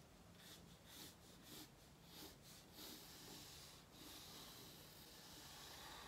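Faint pencil scratching on paper as a curved line is drawn, a few soft strokes in the first four seconds against near silence.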